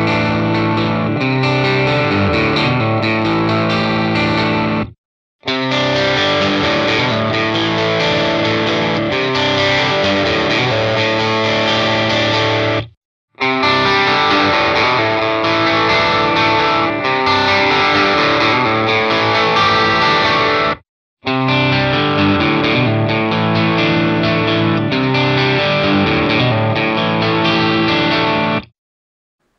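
Electric guitar, an Xotic Telecaster, played through the Mooer GE300's amp simulator on crunch settings with mild overdrive. The same kind of short phrase is played four times in a row on different amp models, each take cut off by a brief silence.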